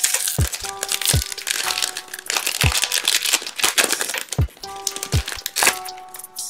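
Crinkling and tearing of a foil baseball-card pack wrapper being opened by hand. Background music with held notes and a few low drum hits plays under it.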